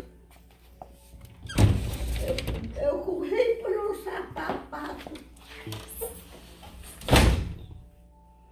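Sliding glass door rolled open with a thud about a second and a half in, then slid shut with a second thud near the end.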